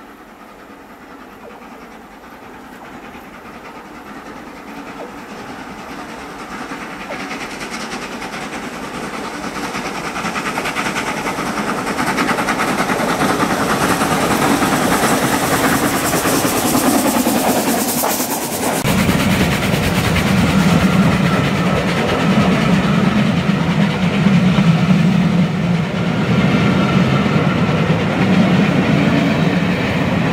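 LMS Royal Scot class three-cylinder 4-6-0 steam locomotive 46100 approaching under steam, growing steadily louder, then passing close by. From a little past halfway a heavy rumble and clatter of the coaches' wheels on the rails takes over.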